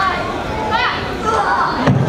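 Indistinct children's voices talking and chattering in a hall, with a single thump just before the end.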